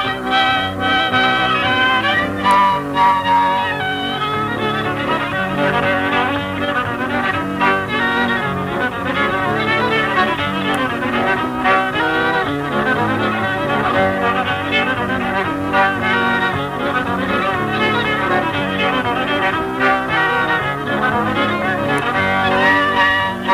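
Old-time fiddle tune in the key of G, played continuously with quick-changing bowed notes, heard from a 1950s home tape recording.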